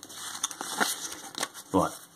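Card-stock scratchcards being handled and shuffled in the hands: paper rustling and crinkling with a few light clicks.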